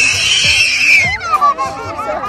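A person's high-pitched scream, held for about a second and dropping in pitch at the end, then excited voices.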